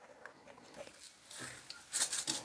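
Quiet pause with a few faint short clicks and a soft rustle: small handling noises.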